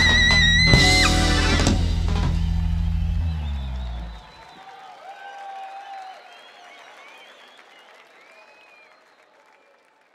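A live rock band with guitar, saxophone and drums ends a song on a held high note and a final hit about a second in, which rings out and dies away over the next few seconds. Faint crowd cheering and applause follows and fades out.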